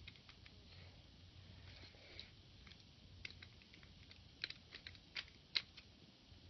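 Faint, irregular small clicks and taps, with a few sharper clicks near the end.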